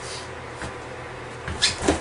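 A brief scuffle near the end: a couple of sharp knocks and thumps as one man takes his partner down to the floor, after a quiet stretch.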